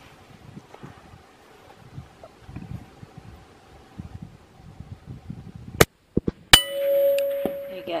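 A single .22-250 Remington rifle shot, followed about two-thirds of a second later by a bullet striking a hanging steel plate target, which clangs and rings on for over a second as it fades: a hit on the plate.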